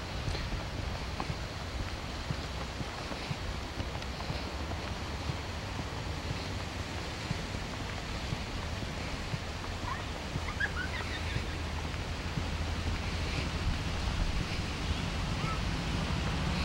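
Steady low rumble and hiss of wind on the camcorder microphone, with a few faint short chirps about ten seconds in.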